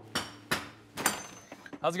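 Hammer blows on nails in wooden stud framing: three sharp strikes with a brief metallic ring, all within the first second or so.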